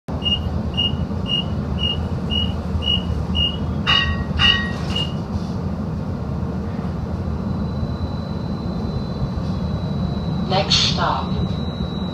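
Seattle streetcar running, heard from inside the car: a steady low rumble, with a series of short high electronic beeps, about two a second, over the first five seconds and two sharp knocks about four seconds in. A faint thin high whine comes in from about seven seconds.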